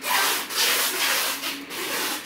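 Polyester collar and leash webbing being pulled through a plastic buckle and rubbed between the fingers: a scratchy rubbing that starts suddenly and swells and eases.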